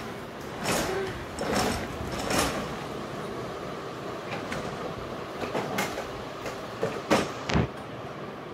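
Hard plastic wheels of a child's toy tricycle rolling and rumbling over a tiled floor, with several short knocks and rattles from the frame.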